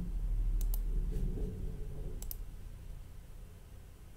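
Computer mouse clicks: two quick double clicks about a second and a half apart, over a low steady room hum.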